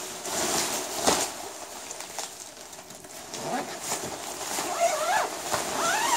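Nylon tent fly fabric rustling as it is handled and turned over, with a sharp knock about a second in.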